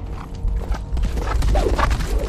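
Horses galloping: fast, irregular hoofbeats over a deep rumble that grows louder about half a second in, with film music beneath.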